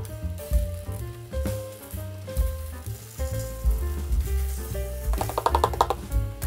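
Loose colored sand sliding and pouring off a tilted sand-painting board, a grainy rush that is loudest near the end, over background music.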